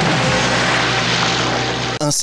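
Loud splash and rush of water as a body plunges into a swimming pool from a height, over sustained notes of film music.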